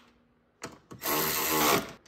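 Milwaukee cordless ratchet with a 10 mm socket running for about a second to snug down a bolt, after a couple of light clicks.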